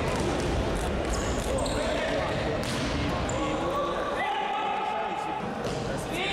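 Futsal ball being kicked and bouncing on a sports hall floor, sharp knocks among players' shouts, all echoing in the hall.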